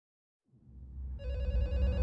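A deep low rumble swells up out of silence, and about halfway through a telephone starts ringing over it.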